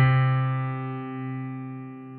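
Piano striking a low C major chord (C3, E3, G3) once and holding it, the notes fading slowly.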